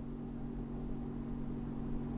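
A steady low hum of several held tones, with no speech over it.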